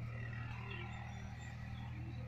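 Faint bird chirps scattered over a steady low hum.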